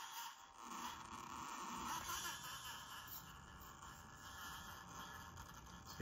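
1/24-scale SCX24 rock crawler's small electric motor and geared drivetrain running faintly as it creeps up onto hard plastic storage boxes, with its soft rubber tires scraping and gripping on the plastic.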